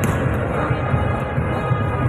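Volleyballs being spiked and hitting the court during a warm-up in a large indoor hall. The low thumping never lets up, and there is a sharp smack of a hit right at the start.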